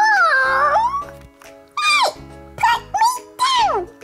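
Background music with several high-pitched vocal cries that glide up and down in pitch, each under a second long. The first and longest comes right at the start, then a short one about two seconds in and two more near the end.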